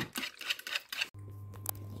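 Metal wire whisk beating eggs in a plastic bowl: quick, irregular clicking strokes. They cut off abruptly about a second in, giving way to a steady low hum.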